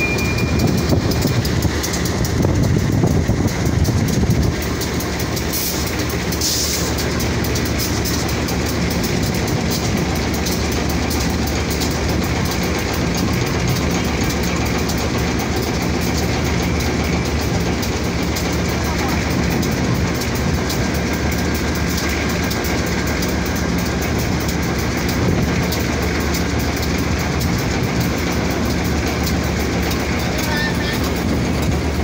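Freight train of oil tank wagons rolling past as it pulls away from a brief station stop. A steady rumble runs throughout, a little louder in the first few seconds.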